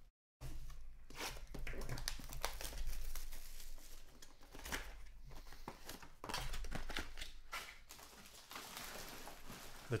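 Foil card-pack wrappers crinkling and trading cards being shuffled and handled on a tabletop: irregular rustles and small clicks. The sound drops out completely for a moment at the very start.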